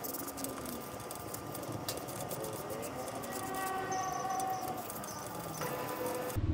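Wet sandpaper being rubbed by hand over a painted steel motorcycle fuel tank: a soft scratchy rasp with scattered small clicks.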